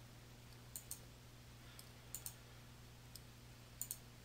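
Computer mouse button clicking: sharp clicks, mostly in quick pairs, three pairs and a single, the last pair near the end, over a faint steady hum.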